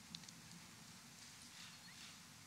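Near silence: room tone, with two faint clicks a fraction of a second in.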